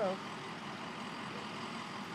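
Steady, even hum of idling truck and armored-vehicle engines in the street.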